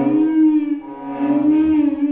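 Cello and electric guitar holding one droning pitch that swells twice, dipping briefly about a second in, with a slight waver in pitch.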